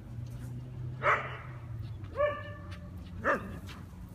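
Dog barking three times, about a second apart, while the dogs play; the middle bark is longer and more drawn out than the other two.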